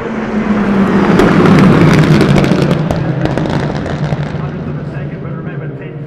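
Several TCR touring cars passing at racing speed, their engines swelling to a loud peak about a second and a half in and then fading away, with a run of sharp exhaust cracks and pops as they go by.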